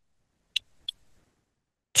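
Near silence in a pause between speech, broken by two short clicks about a third of a second apart, about half a second in.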